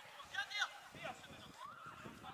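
Distant shouts and calls from players on a football pitch: a couple of short calls about half a second in and one rising call near the end, over faint outdoor background noise.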